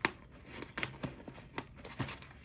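A quiet room with faint handling noise: a sharp click at the start, then a few soft ticks and rustles.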